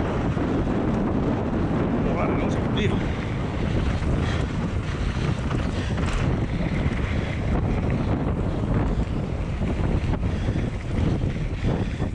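Wind rushing over a helmet camera's microphone as a mountain bike descends a dry dirt trail at speed: a steady loud rumble with occasional short clicks and rattles from the bike and trail.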